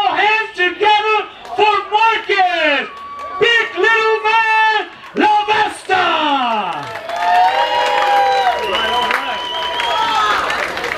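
A ring announcer's voice over the PA, with long drawn-out words, and crowd cheering under it toward the end.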